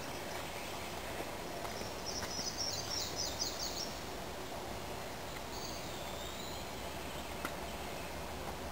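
A small songbird sings a quick run of high notes that speed up, about two seconds in, then gives a short high whistle a few seconds later, over a steady outdoor hiss.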